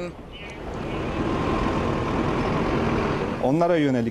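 Steady outdoor vehicle noise, a rumbling hiss with no clear tone, building up over the first second. A voice begins speaking near the end.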